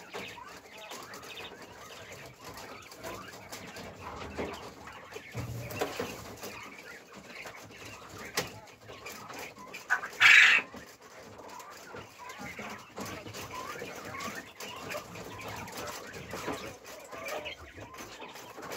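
Texas quail (a white Japanese quail breed) in a cage, making soft short chirping and clucking calls throughout. One brief, loud, harsh sound comes about ten seconds in.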